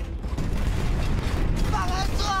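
Earthquake in a film soundtrack: a deep rumble that starts suddenly, with rattling and creaking of a shaking house. A voice begins shouting near the end.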